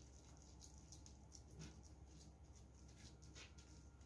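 Faint, irregular soft patting and rubbing of a plastic-gloved hand pressing ground meatloaf mixture into a baking dish, a few light touches a second over near-silent room tone.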